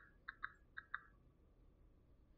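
Near silence with faint short clicks in pairs, a soft click followed by a louder one, three pairs within the first second.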